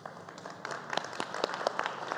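Applause: separate hand claps that grow denser and louder.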